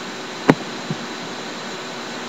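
Steady hiss of room noise with a single sharp click about half a second in.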